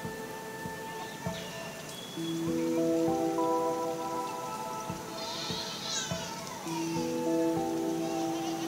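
Soft background music of slow, sustained chords. A brief high chirping sound comes in about five seconds in.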